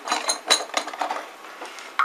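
Metal espresso-machine portafilter, its basket loaded with small metal jewellery, being pushed up into the group head and twisted into place: a few sharp metallic clicks and clinks, the loudest about half a second in, then quieter scraping.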